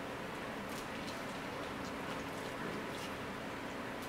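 Faint scattered clicks and crackles of steamed blue crab shells being picked apart by hand, over a low steady room hiss with a faint hum.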